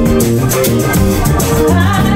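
Live band playing through a PA: electric guitar, keyboard and a bass line over steady shaker-like percussion, with a woman singing.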